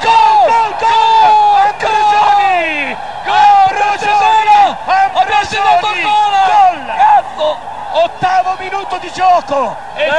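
A man's voice yelling in long, high-pitched, wordless cries of joy at a goal just scored, loud and almost unbroken.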